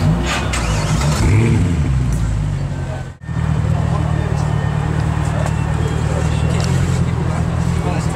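Mercedes C63 AMG's 6.2-litre V8 idling steadily through an IPE aftermarket exhaust, a low even note from the quad tailpipes. Voices talk over it in the first three seconds, before a brief break.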